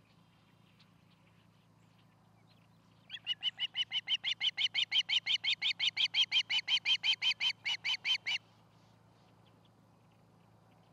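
An osprey calling: a fast, even run of about two dozen sharp, whistled chirps, roughly five a second, starting about three seconds in and stopping after some five seconds.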